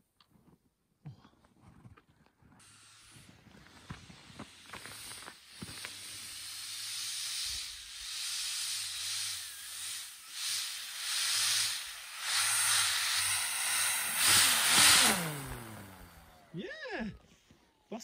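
Electric motor and propeller of an RC foam Turbo Beaver running with a hissing whoosh, growing louder as the plane taxis up on snow. About fifteen seconds in the motor spins down with a falling whine.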